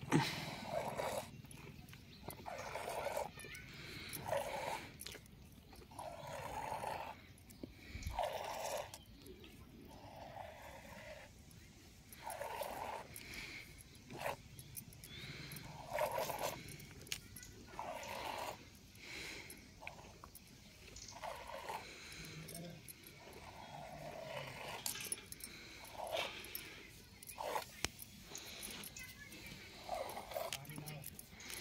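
Goat being hand-milked from one teat into a steel pot: short squirts of milk into the pot, in a steady rhythm of about one a second.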